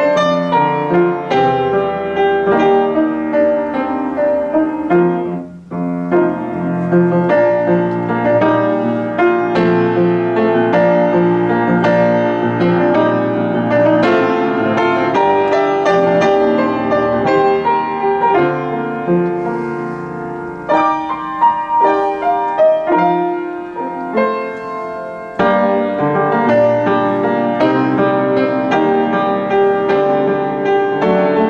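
A Kimball upright piano played as a demonstration, a continuous flowing piece of melody over chords, with a brief break in the playing about five and a half seconds in.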